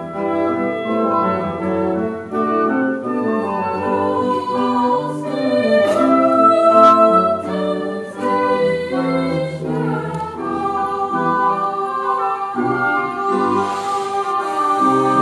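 Classical choral music: a choir with boys' voices singing sustained lines together with a baroque orchestra of oboes, strings, lute and harpsichord.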